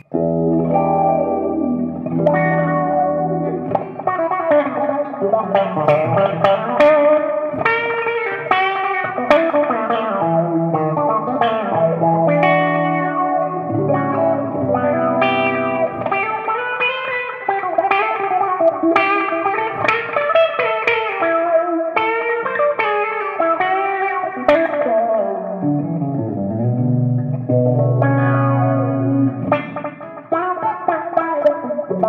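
Gretsch hollow-body electric guitar played through an MXR Bass Envelope Filter: a funky run of picked notes and chords, the filter sweeping the tone of each note as it is struck.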